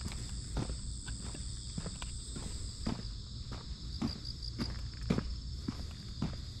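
Footsteps of a person walking on asphalt, about two steps a second, with a steady high-pitched hum behind them.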